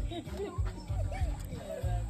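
A man's high-pitched whimpering, mock-crying voice: a string of short rising-and-falling whines, about four a second, over background music with a steady bass.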